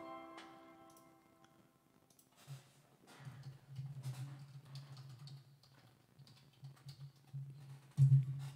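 The last chord on a digital piano dies away. Then come faint, scattered clicks of typing on a computer keyboard.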